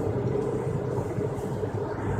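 Steady road and engine noise of a moving car, heard from inside the cabin, with a low hum underneath.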